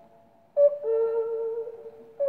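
A 78 rpm shellac record of a yodel song playing on a portable wind-up gramophone. The music dies away into a short pause, then a flute-like high note comes in about half a second in, starts briefly higher, and is held for about a second and a half.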